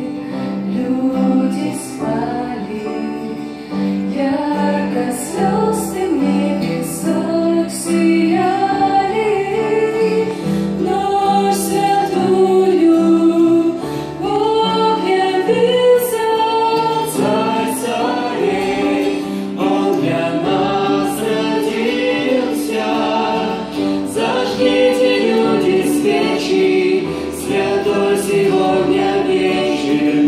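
A small vocal group of mixed male and female voices sings a Christmas song in Russian into microphones, accompanied by acoustic guitar.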